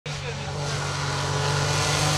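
Rally car's engine, a Peugeot 208 Rally4 turbo three-cylinder, running at steady high revs as the car approaches, growing slowly louder.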